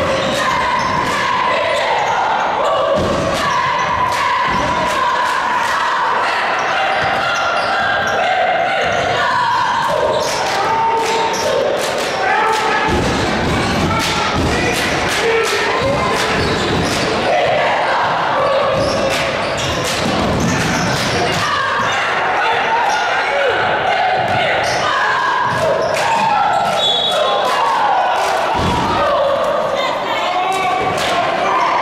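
A basketball bouncing and being dribbled on a hardwood gym floor in a large hall, with repeated sharp impacts throughout, over indistinct voices of players and spectators.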